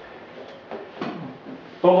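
A short pause in a man's talk in a small room: low room noise with a few faint light knocks, then his speech starts again near the end.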